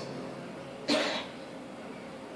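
A person coughing once, briefly, about a second in.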